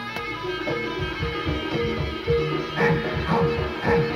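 A jaranan ensemble playing traditional East Javanese music: kendang drum strokes under a steady pattern of short, repeating pitched notes about twice a second.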